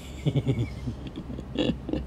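A man's low voice making short, broken vocal sounds without clear words.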